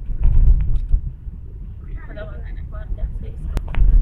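Car driving, heard from inside the cabin: a continuous low rumble of engine and road noise. Two sharp clicks come about three and a half seconds in.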